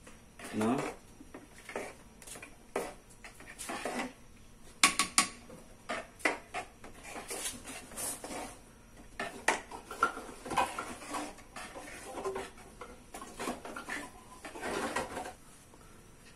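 Metal ladle stirring a simmering tapioca-flour and sugar mixture in a large aluminium pot, with irregular clinks and scrapes as it knocks and drags against the pot's sides and bottom.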